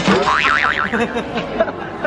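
A cartoon-style "boing" sound effect: a sharp click followed by a wobbling, warbling tone lasting about half a second. Low voices continue under and after it.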